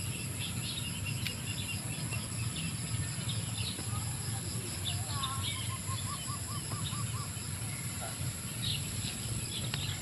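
Rural field ambience: a steady high insect drone with scattered bird chirps, and a bird calling a quick run of about seven short notes near the middle. A low steady rumble runs underneath.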